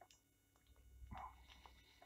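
Near silence: room tone with a faint low hum, and one faint, brief soft sound about a second in.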